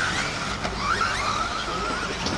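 Electric 1/10-scale 4WD RC buggies with 13.5-turn brushless motors running on the track: a high motor and drivetrain whine that rises briefly about halfway in, then holds steady over a background hiss.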